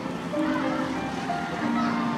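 A group of schoolchildren singing a slow song together, each note held for half a second or more before stepping to the next, with people talking over it.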